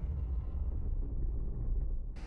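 Deep, steady low rumble from a sports broadcast's intro sound effect, the bass tail of the whoosh that comes before it, with its higher part fading away.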